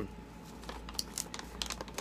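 A sheet of paper being picked up and handled, rustling and crinkling in a run of light, irregular clicks from about half a second in.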